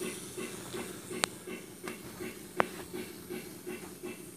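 MRC Sound Station playing model-railway steam-locomotive sound: a soft hiss pulsing about three times a second, with two sharp clicks a little over a second apart.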